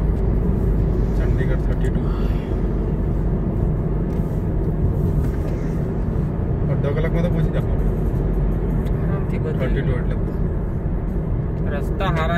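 Steady road and engine noise inside the cabin of a car driving on a highway, with brief snatches of muffled talk now and then.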